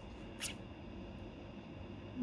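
Quiet room hum with one brief, sharp swish about half a second in: a trading card being picked up off the pile and handled.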